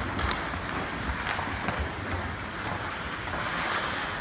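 Ice hockey play: skate blades scraping and carving on the ice in a steady hiss, with a few light clicks of sticks and puck.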